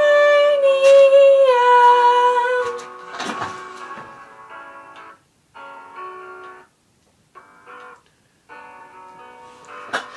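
A woman belting one long sung note that steps down in pitch partway through and ends about three seconds in. A brief rustle follows, then a quiet instrumental backing track plays on with short breaks.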